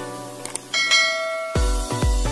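Background music with a click and a bright bell-like chime, a subscribe-button sound effect, about three-quarters of a second in; a heavy bass beat starts about a second and a half in.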